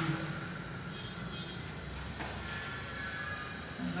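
A steady low hum with an even hiss of room background noise, while a marker writes faintly on a whiteboard, with one light tap about two seconds in.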